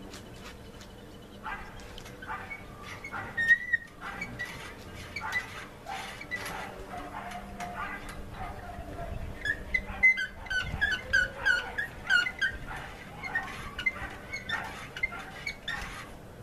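A dog whimpering and yipping in a run of short, high calls, most of them in the second half, with scattered knocks and clicks.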